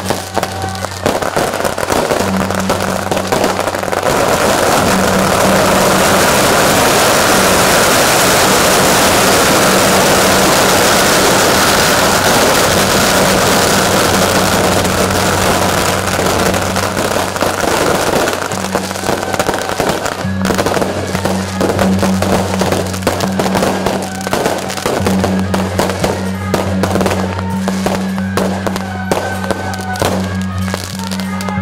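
Strings of firecrackers going off: a dense, continuous crackle for about fourteen seconds, breaking up after that into scattered separate bangs.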